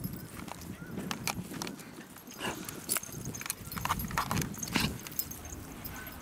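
Irregular footsteps, clicks and rustles on grass and dirt from a person walking dogs on leashes.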